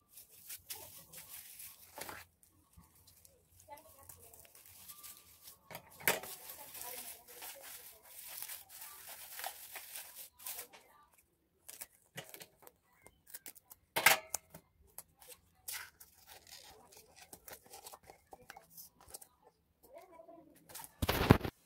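Tinsel garland rustling and crinkling as it is handled and pressed around a cardboard disc, with tape tearing off the roll and a few sharp clicks and taps.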